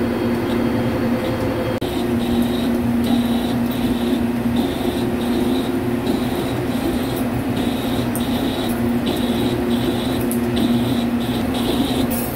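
Vertical CNC lathe taking a 5 mm deep roughing cut in a large steel workpiece at 40 rpm: a steady machine hum with low tones. From about two seconds in, a high tone cuts in and out in short pulses.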